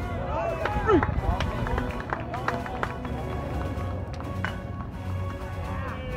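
Indistinct voices at a baseball field, with short calls rising and falling in pitch, over a steady background and a few sharp clicks.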